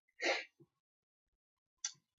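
A man makes a short, breathy noise at the microphone, like a stifled sneeze or a sharp exhale. A brief, sharp breath noise follows near the end.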